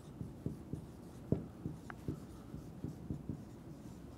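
Dry-erase marker writing on a whiteboard: a faint, irregular run of short taps and strokes as letters are written, with one brief high squeak about two seconds in.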